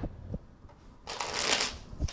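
A deck of tarot cards shuffled by hand: a couple of soft taps, then about a second in a quick, dense rustling burst of cards riffling, the loudest part.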